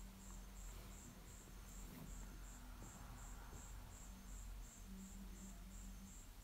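Faint chirping of an insect: a high chirp repeating evenly, about three times a second, over low room hum.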